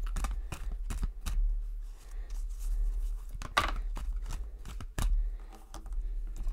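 A deck of tarot cards being shuffled by hand, the cards flicking and snapping against one another in irregular strokes, with louder snaps about three and a half and five seconds in.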